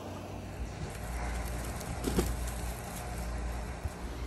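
Outdoor background with a low wind rumble on the microphone and one short bird call about two seconds in.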